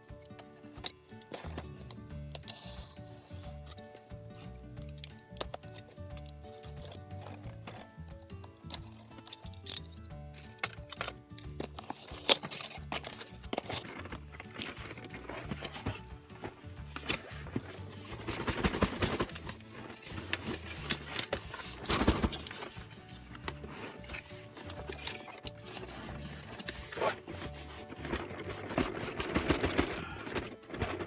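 Background music, over a box cutter slicing packing tape and cardboard carton flaps being pulled open, with sharp clicks and louder scraping and rustling of cardboard in the second half.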